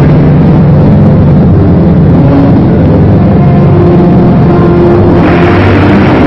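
Loud orchestral music from a 1950s film trailer: held brass chords over a heavy low end, growing brighter near the end.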